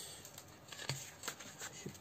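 Sheets of 15 × 15 cm, 180 g scrapbooking paper being handled and lifted off a stack: faint paper rustling with a few light ticks, the sharpest a little under a second in.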